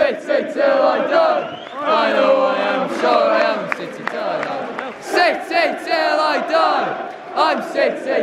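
Crowd of football supporters singing a chant together in loud phrases, with a few handclaps among the voices.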